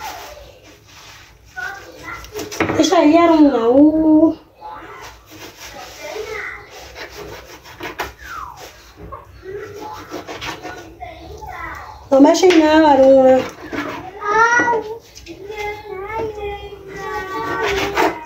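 A young child's high-pitched voice, calling out loudly for a second or two about three seconds in and again about twelve seconds in, with shorter cries and babble in between. Faint rubbing and scraping sounds lie underneath.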